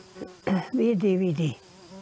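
A steady low insect buzz around the microphone, with a brief spoken reply about half a second in.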